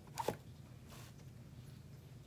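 Brief handling noises from applying makeup: a short rasping scrape about a quarter second in, then a fainter one about a second in, over a low steady hum.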